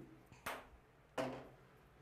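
A small ping-pong-type ball landing in a handheld egg carton: two sharp clicks about two-thirds of a second apart, each with a short ring.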